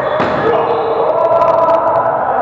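A volleyball being hit during a rally, with a sharp smack echoing through the hall just after the start and a few lighter knocks later, over players' raised voices calling out.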